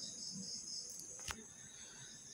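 Faint high-pitched insect chirping, a steady high trill with pulsing notes several times a second, and a single sharp click about a second and a quarter in.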